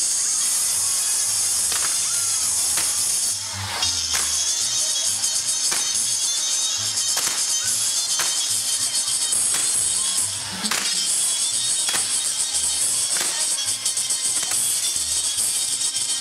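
Castillo fireworks burning: a dense, steady hiss and crackle of sparking fountains and wheels, broken by sharp bangs every second or two.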